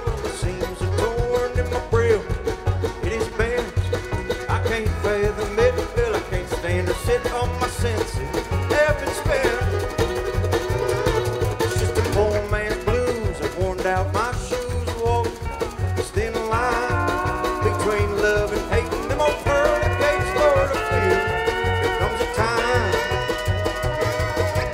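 Live string band playing an instrumental passage: banjo, mandolin, fiddle and upright bass over drum kit and congas, with a steady beat. Higher held melody lines come up over the last third.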